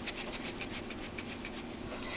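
Ground spice blend (paprika, onion and garlic powder, dried herbs) shaken in a lidded glass mason jar, a faint, steady rustle of powder against glass.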